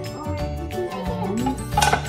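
Background music with a steady beat and a melody line, with a brief louder crash near the end.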